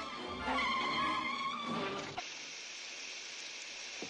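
Cartoon sound effects of an old car braking hard, with a tyre-squeal skid and engine rumble. About two seconds in this cuts off abruptly into a steady, loud hiss of water spraying from the car's punctured radiator.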